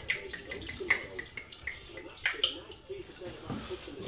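Red wine glugging out of a bottle as it is poured into a pot of tomato stew.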